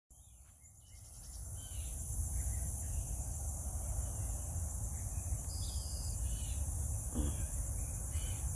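Steady high-pitched insect chorus, with a low rumble underneath that swells in over the first two seconds and a few faint bird chirps.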